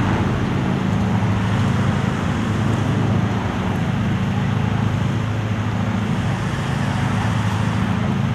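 Engine-driven balloon inflator fan running steadily, blowing air into a hot-air balloon envelope during cold inflation: a steady low engine hum under a hiss of rushing air.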